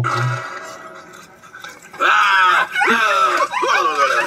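Animated film soundtrack playing through a computer's speakers: quiet for about two seconds, then loud, repeated shrieks and yells that fall in pitch.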